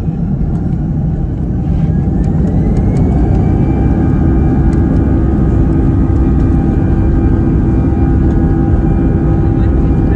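Airbus A319 jet engines spooling up to takeoff thrust, heard from inside the cabin. A whine rises in pitch over the first few seconds and then holds steady over a heavy, constant rumble as the takeoff roll gets under way.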